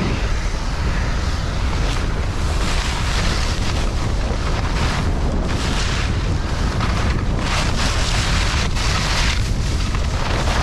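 Wind buffeting the camera microphone while skiing fast downhill, with skis hissing and scraping over hard, icy snow in surges as they carve turns.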